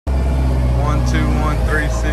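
Caterpillar 903C compact wheel loader's diesel engine running steadily with a deep, even drone as the machine drives. A person's voice is heard briefly over it about a second in.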